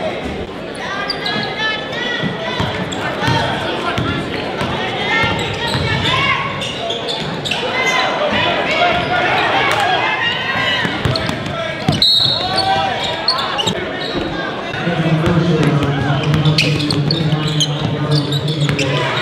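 Basketball being dribbled on a hardwood gym floor amid the chatter of a crowd of voices. A brief high tone comes about twelve seconds in, and a steady low drone joins near the end.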